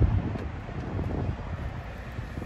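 A low thump of the phone being handled, then a low rumble of wind on the phone's microphone.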